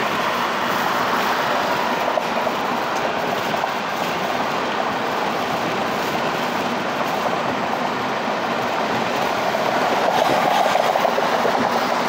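Steady road and tyre noise of a car driving on the freeway, heard from inside the cabin, growing a little louder near the end.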